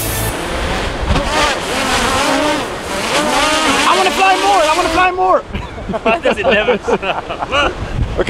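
Wind on the microphone and breaking ocean surf, with people's voices talking over it.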